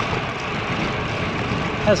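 Steady rushing noise of wind and tyres on asphalt at riding speed on a road bike, as picked up by a bike-mounted action camera's microphone.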